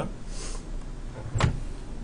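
A brief soft laugh, then a single sharp click about a second and a half in, over a steady low hum.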